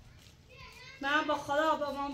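Speech only: after a quiet first second, a high-pitched voice starts talking about a second in.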